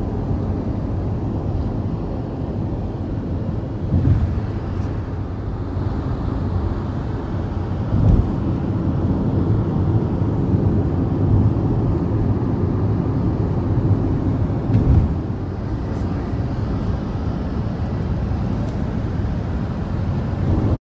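Steady low road and engine noise heard from inside a vehicle travelling at speed on an expressway, with a few brief thumps.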